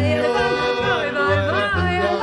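Klezmer band playing live: a melody with sliding, bending notes over accordion, with a double bass sounding a steady pulse of low notes two to three times a second.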